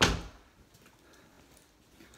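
A single sharp thud of an interior door being shut, dying away within about half a second.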